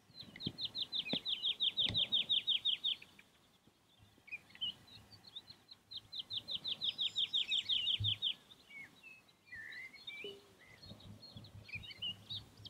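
A small songbird singing: two fast trills of quick, repeated down-slurred notes, each lasting about three seconds, the second starting about six seconds in. Scattered short chirps come between and after the trills.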